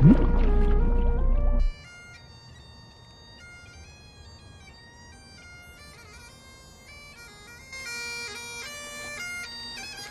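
Bagpipes playing a slow tune over a steady drone, loud for the first second and a half. Then they drop off suddenly to a much quieter, thinner version of the tune without the drone, which grows louder again near the end.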